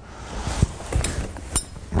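Metal parts of a clay-target trap clinking and knocking as they are handled, with a few sharp knocks about half a second, one second and a second and a half in.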